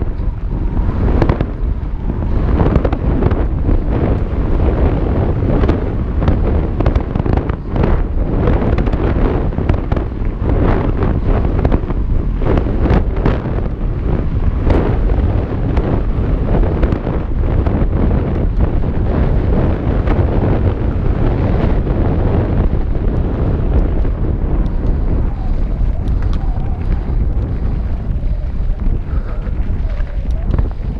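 Loud wind rushing over a helmet-mounted action camera's microphone on a fast mountain-bike descent, mixed with the tyres on loose dirt and frequent short knocks and rattles from the bike over the rough trail; the knocks thin out over the last few seconds.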